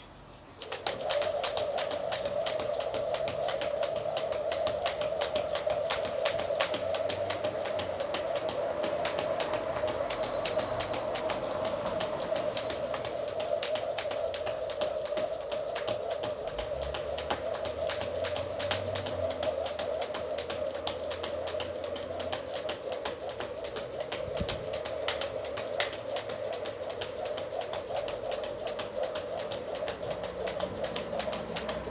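Jump rope turning steadily, a continuous whirring swish with regular sharp taps of the rope and feet striking the ground, starting abruptly about a second in.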